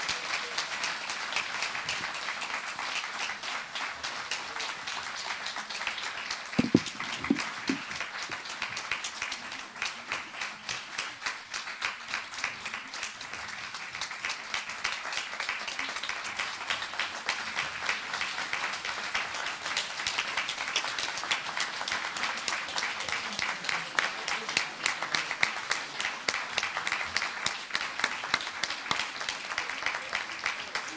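Audience applauding: many hands clapping steadily throughout. A couple of brief low thuds stand out about seven seconds in.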